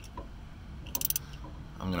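A socket wrench clicking lightly on the bolt that holds the vapor canister purge valve solenoid as it is loosened: one click at the start and a quick run of clicks about a second in.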